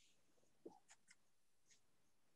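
Near silence, broken by a few faint short rustles and clicks of paper as a raffle ticket is drawn by hand from a box.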